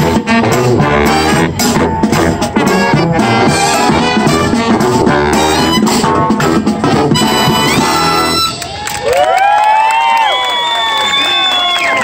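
Marching brass band of trumpets, trombones, saxophones, sousaphone and drums playing a lively tune. About eight seconds in, the full band and its low end stop, and only a few high pitched sounds that slide up and down carry on to the end.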